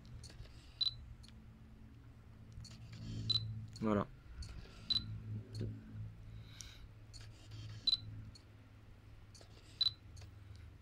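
Fujifilm X-Pro1 with an XF 35mm f/1.4 lens autofocusing: the lens's focus motor whirs and clicks quietly as the contrast-detect autofocus hunts. A short, high focus-confirmation beep sounds five times, whenever focus locks.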